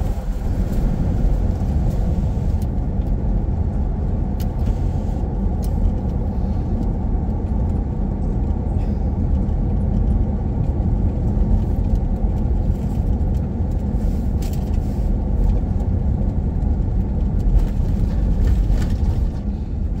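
Steady road and engine noise heard from inside a car cabin with the windows up, while driving along a paved highway: a low, even rumble of tyres and engine.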